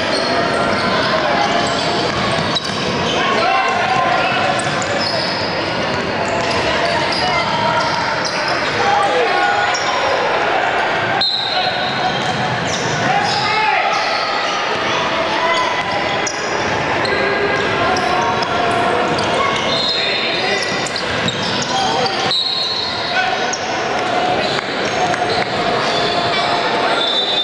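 Youth basketball game sounds in a large, echoing gym: a basketball bouncing on the hardwood court, sneakers squeaking, and players and spectators calling out and chattering throughout.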